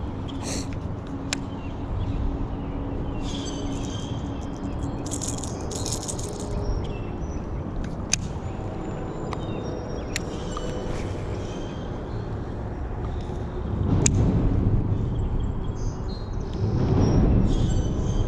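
Outdoor sound of a cast-and-retrieve with a Daiwa baitcasting reel: steady low wind noise on the camera's microphone, the reel being cranked, with a few sharp clicks, and two louder bursts of low noise near the end.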